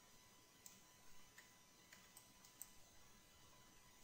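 Near silence with a handful of faint, scattered clicks from a computer mouse and keyboard, bunched in the first three seconds.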